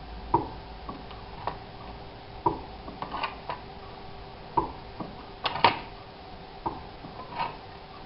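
A homemade sheet-metal shrinking tool is being worked on a strip of sheet metal, making sharp, irregular metallic clicks and clacks about once a second. The loudest is a pair of clacks about five and a half seconds in. Each stroke shrinks the edge of the strip and bends it into a curve.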